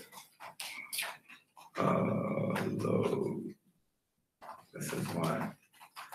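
Indistinct human voice: a drawn-out murmured vocal sound of about two seconds, then a shorter one about four and a half seconds in, with a few faint clicks early on.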